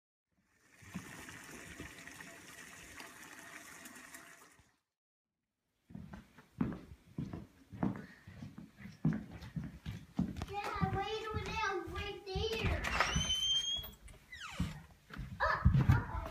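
A steady hiss for the first few seconds, then knocks and handling noise from a handheld camera being carried through a house. Partway through, a high-pitched, child-like voice vocalises without clear words for about two seconds, followed by a brief sharp rising squeal.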